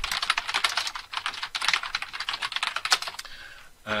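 Fast typing on a computer keyboard: a quick, dense run of key clicks that stops about three seconds in.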